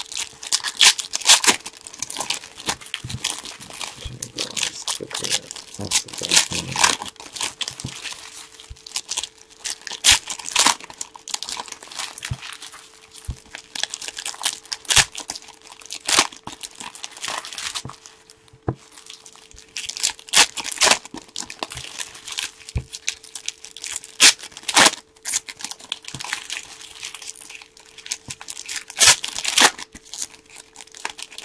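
Foil trading-card pack wrappers being torn open and crumpled by hand, an irregular run of sharp crinkles and rips.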